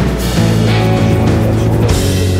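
Loud rock music in an instrumental passage with no singing, carried by a heavy, steady bass.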